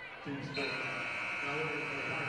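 Arena horn from the scorer's table giving a long, steady buzz that starts about half a second in, sounding for a substitution during a dead ball.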